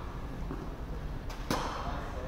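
A tennis ball struck with a racket once, a sharp pop about one and a half seconds in that rings briefly in the roofed hall, with a lighter tick just before it.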